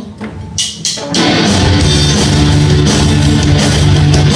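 A live rock band with electric guitars starts a song about a second in and plays loud and steady, after a few sharp clicks.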